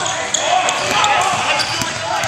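Basketball game sounds on a hardwood gym floor: brief high sneaker squeaks and the thud of a bouncing basketball, with spectators' voices calling out.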